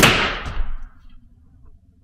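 Electronic paintball marker firing one shot: a sharp crack with a short decaying tail, then a fainter tap about half a second later.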